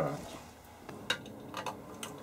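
A few light clicks and knocks as the metal-cased decade resistance box is handled on the bench, spaced out through the second half.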